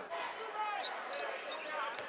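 A basketball being dribbled on a hardwood arena court, a run of short bounces.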